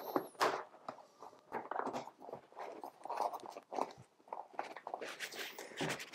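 Faint handling noise: crinkly rustling and scattered light clicks and knocks as hands move a small plastic fixed-wing drone and its fabric cover.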